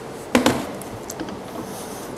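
A wooden dowel knocked against the wooden workbench: one sharp wooden knock about a third of a second in, followed by a few faint light taps.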